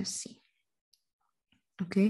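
A woman's voice speaking briefly at the start and again near the end, with near silence in between.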